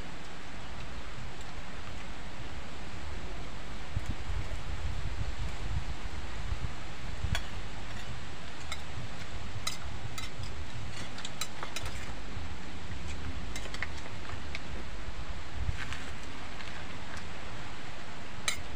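Wind buffeting the microphone, heard as a steady low rumble. Light clinks of spoons against plates come now and then, mostly in the second half.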